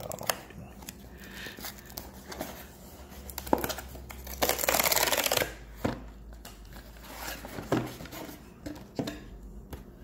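A perforated tear strip being ripped off a kraft cardboard mailer box, heard as one loud tearing rip lasting about a second near the middle. Light knocks and rustles of the cardboard being handled come before and after it.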